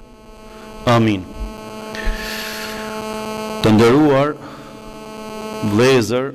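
Steady electrical mains hum through the microphone and loudspeaker system. A man's voice breaks in three times with short, drawn-out words, and a brief hiss comes midway.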